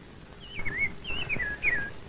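A bird calling three times: short warbling whistles, each wavering and falling in pitch, about half a second apart.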